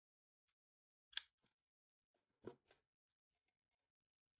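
Pruning shears snipping through a flower stem: one sharp click about a second in, then two fainter clicks a second and a half later.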